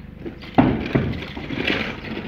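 A large metal-clad sliding barn door banging as it is pushed back upright onto its track: a loud knock about half a second in, a second knock about a second in, and a rumbling clatter of the sheet metal.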